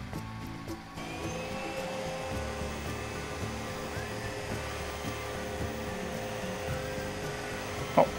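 iRobot Roomba Combo j9+ robot vacuum-mop running: a steady whir from its suction motor that starts about a second in, as it cleans with its mop pad lowered. Background music plays underneath.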